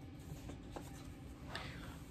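Blu-ray cases being handled between titles: faint rustling and scraping with a couple of light clicks.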